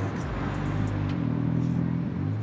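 Tuk-tuk engine running steadily under a passenger riding in the open cab, with road and traffic noise around it.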